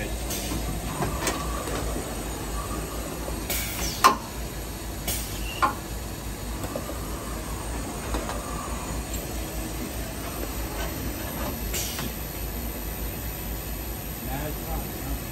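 Steady machine-shop background rumble and hiss, with a few sharp knocks: the loudest about four seconds in and a lighter one a second and a half later.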